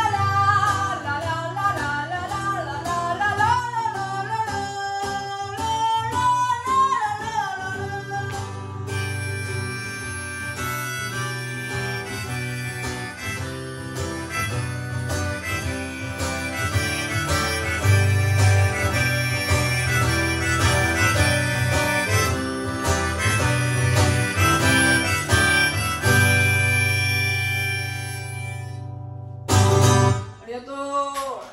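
Acoustic guitar strummed under a woman's singing voice. From about nine seconds in, the singing gives way to a harmonica played in a neck rack over the strumming. The harmonica ends on a long held note that breaks off just before a final loud guitar strum.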